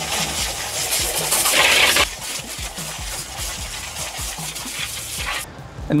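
Water spraying from a garden hose nozzle into the open chambers of a pond drum filter, flushing muck and debris from around the drum gear. The spray is loudest between about one and a half and two seconds in, runs more softly after that and stops shortly before the end.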